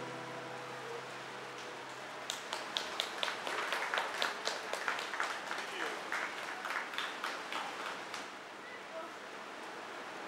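An acoustic guitar's final chord rings out and fades, then a small audience claps for about six seconds at the end of the song.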